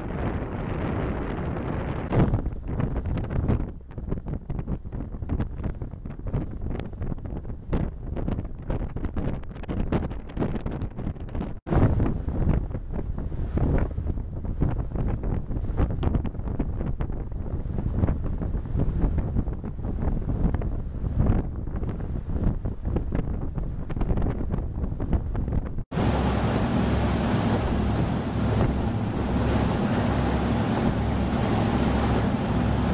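Wind buffeting the microphone on a moving boat, with water rushing past as a rough low rumble. Near the end a boat engine adds a steady low hum under the rush of its churning wake.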